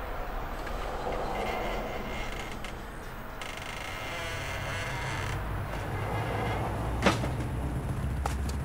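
A steady low rumble, with a house's front door shutting in one sharp knock about seven seconds in.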